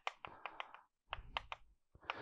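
Chalk writing on a chalkboard: a quick run of faint taps and clicks as the strokes are made, stopping about one and a half seconds in.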